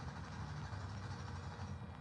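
Quiet, steady low rumble of outdoor background noise, with no distinct events.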